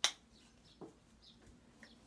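Toothbrush bristles scrubbing teeth: one short, sharp scratchy stroke at the start, then a couple of faint strokes.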